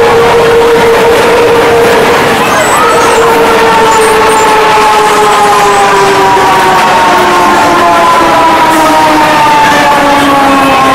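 Roller coaster train running along its track with a loud, steady rolling roar. A humming tone rides on top of it, holding steady and then sliding slowly down in pitch from about halfway through, as the train slows.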